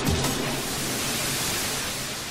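A low hit ends a beat-driven electronic music cue, followed by a steady rushing hiss that takes its place and starts to fade near the end.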